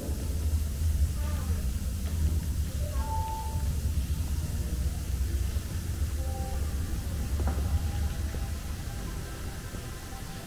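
Busy exhibition-hall ambience: a steady low rumble under scattered snatches of visitors' voices, with faint short tones from the background.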